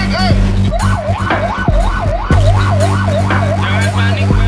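Fire truck siren sounding a fast yelp, its pitch rising and falling about two to three times a second, with a steady low hum beneath it.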